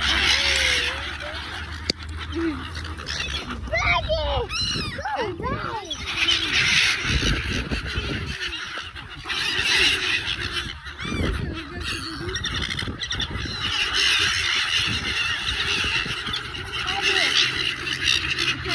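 A flock of silver gulls squawking as they crowd around someone feeding them, with a dense run of overlapping calls about four to six seconds in.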